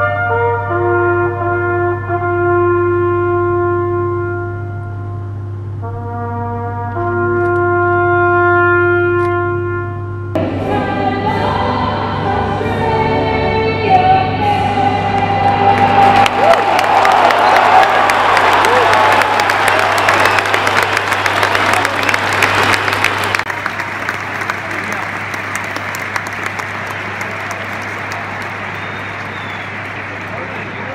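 A lone brass instrument plays a slow call of long held notes over a stadium crowd standing in silence, typical of the Anzac Day bugle calls. About ten seconds in it cuts to a huge crowd cheering loudly, which eases to a lower, steady crowd noise for the last several seconds.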